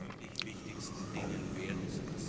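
A pause in speech: faint, low voice in the background over room tone, with a small click about half a second in.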